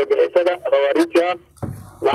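A man speaking over a telephone line, breaking off in a short pause near the end.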